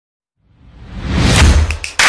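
Intro whoosh sound effect with a deep bass rumble, swelling from silence about half a second in to full loudness, with a few short sharp ticks near the end, as the animated title card appears.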